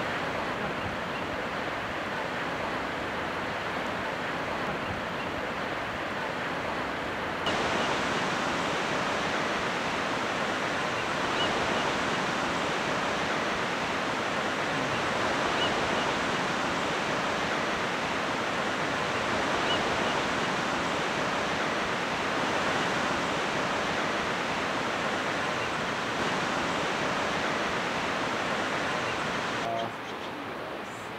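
Steady wash of ocean surf breaking along a rocky coast, which becomes louder and brighter about seven seconds in.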